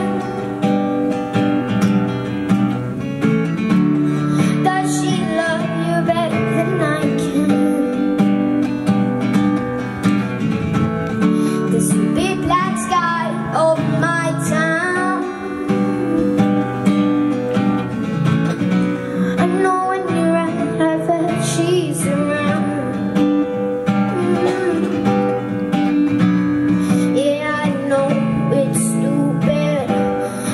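A boy singing a slow pop ballad into a microphone, accompanying himself on a strummed steel-string acoustic guitar.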